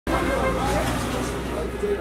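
Street ambience: a steady low rumble of road traffic with people talking in the background.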